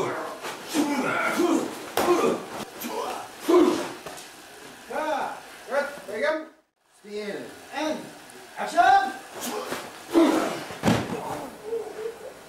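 People's voices mixed with several sharp thumps and slams from staged fight action, bodies hitting each other and the floor. The sound cuts to silence briefly just past the middle.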